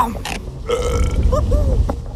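A long, deep cartoon burp from an animated lava monster character, starting about half a second in and lasting about a second, with a low rumble under it.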